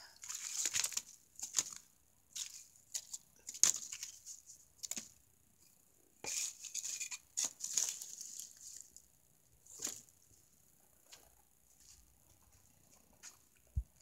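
Irregular scrapes and rustles with a few sharp clicks, from dry firewood and kindling being handled at a wood-fired clay stove. They thin out in the last few seconds.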